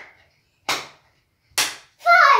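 Sharp hand claps, two of them about a second apart, with the tail of a third just as it begins.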